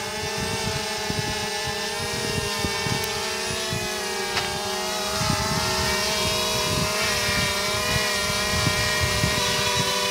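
Small quadcopter drone hovering close by, its propellers giving a steady multi-pitched whine that wavers slightly as the motors hold position, with irregular low buffeting on the microphone.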